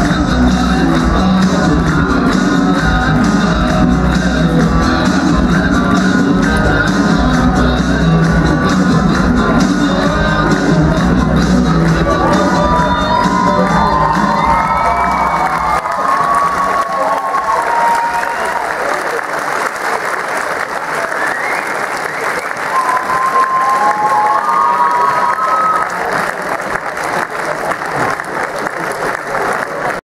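Loud music with a heavy bass beat over a large crowd. About halfway through the music stops and the audience keeps applauding and cheering, with shouts rising above the clapping.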